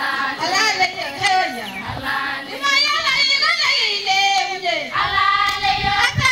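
A group of schoolchildren singing together, their voices loud and continuous.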